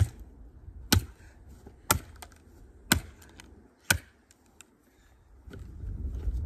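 A golf club head smashing shards of a broken plant pot on grass: five sharp strikes about a second apart, followed by a short lull.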